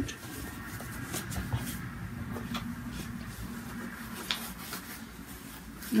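Quiet handling noise: faint rustles and a scattering of light clicks as a cross-stitch project is handled and put aside.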